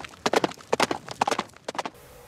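A fast, uneven run of sharp taps, about eight a second in small clusters, stopping near the end.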